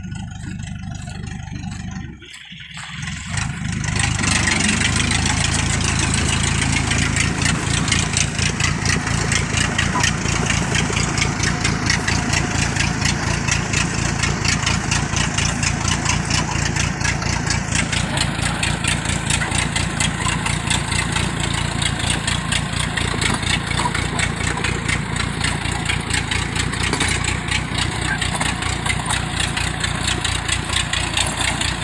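Engine of a tracked rice-hauling cart, loaded with bags of rice and crawling through deep paddy mud. It is quieter for the first couple of seconds, dips briefly, then rises to a loud, steady run with a fast, even firing beat.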